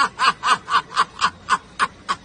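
A person laughing in quick, even bursts, about five a second, trailing off near the end.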